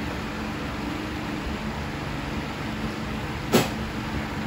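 Steady room noise with a faint low hum, broken by one short, sharp click or snap about three and a half seconds in.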